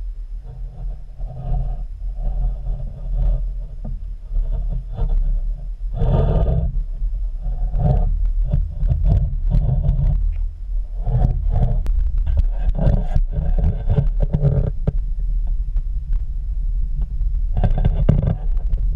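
Muffled underwater rumble picked up through a GoPro's waterproof housing, with irregular knocks and scrapes that grow busier about six seconds in.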